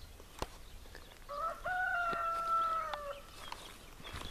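A rooster crowing once: a single long call of about two seconds, starting a little over a second in, held level and trailing off at the end.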